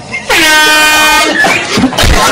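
Handheld canned air horn sounding one loud blast about a second long, steady in pitch, followed by a jumble of noise.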